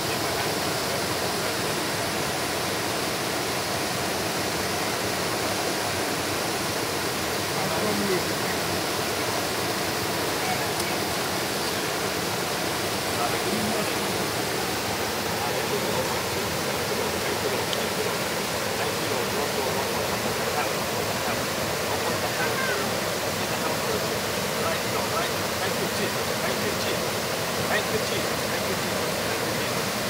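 Small waterfall pouring over rocks into a river: a steady, even rush of water.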